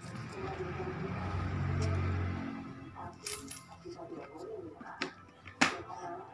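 Coins dropped one at a time through the slot of a plastic coin bank, clinking as they fall in; a few sharp clinks, the loudest near the end. A low rumble runs through the first half.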